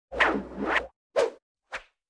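Title-card swoosh sound effects: one long two-part swoosh, then a shorter swoosh and a fainter, briefer one, with silence between them.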